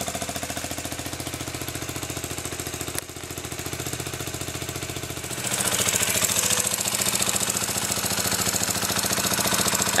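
KTM Duke 125's single-cylinder four-stroke engine idling steadily with a fast, even pulse, running after its alternator cover gasket was replaced. It gets louder and brighter about five and a half seconds in.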